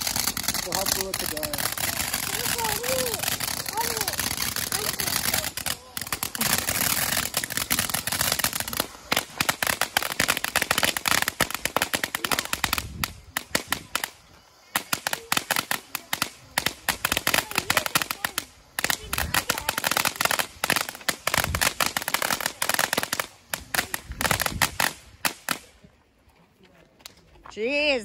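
A ground fireworks fountain burning: a steady, loud spray of hiss and crackle for about nine seconds, then rapid runs of sharp popping crackles that go on for a long stretch and stop a couple of seconds before the end.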